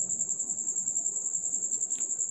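A cricket chirping: a high, steady trill with a rapid, even pulse.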